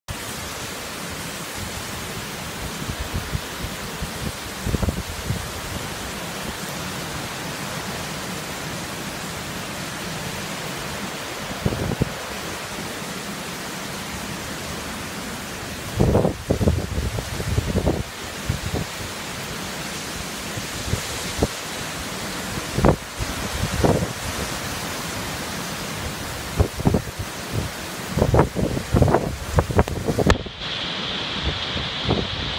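Heavy hurricane rain pouring down steadily, with gusts of wind buffeting the microphone every few seconds, coming more often near the end.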